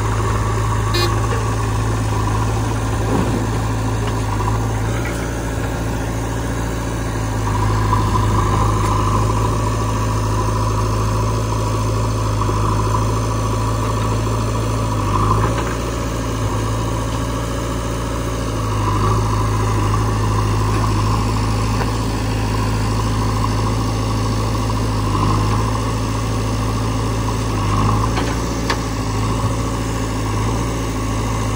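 Diesel engines of a JCB 3DX backhoe loader and a Sonalika 740 DI tractor idling steadily close by.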